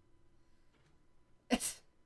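A single short, sudden breathy burst from a person close to the microphone, about one and a half seconds in, with a sharp onset and two quick peaks.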